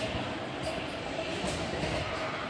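Steady street noise: an even rumbling hiss of a busy urban lane, with no distinct event standing out.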